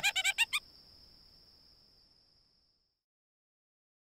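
Cartoon character voice giving a quick four-note squeaky giggle, over a thin steady high whine that fades out by about three seconds; silent after that.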